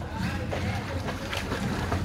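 Swimming-pool water splashing and sloshing, with wind rumbling on the microphone.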